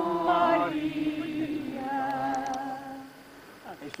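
A group of people singing a hymn a cappella, the voices closing on a long held note that fades out about three seconds in.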